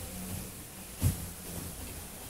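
A handheld microphone being handled as it is passed from one person to another, with one short handling thump about a second in, over low steady room background.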